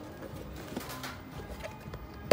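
Background music, with a few faint light clicks of a plastic food-container lid being handled.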